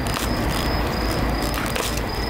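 Steady night-time outdoor ambience with a continuous high insect trill over a low steady rumble. A few short rustling noises come about a fifth of a second in and again near the end.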